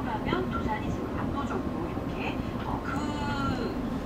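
Inside a city bus standing at a red light, the engine idles with a steady low rumble. A voice with rising and falling pitch plays over it, most likely from the bus radio.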